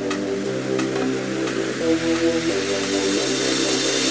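Background instrumental music: soft held chords that change every second or so.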